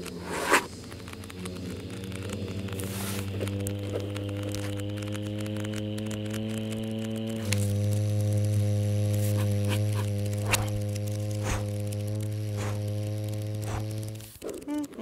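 Low mechanical hum with a stack of overtones, swelling in over the first seconds and creeping slightly up in pitch, then jumping louder about seven and a half seconds in, like a machine starting up; a few sharp clicks sound over it.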